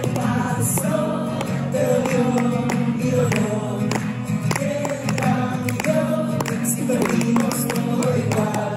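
Live acoustic song: a man singing long held, wordless notes over a steadily strummed acoustic guitar.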